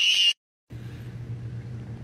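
A brief loud hissing burst that cuts off abruptly, then after a short gap a steady low purr from a ginger-and-white cat having its chin rubbed.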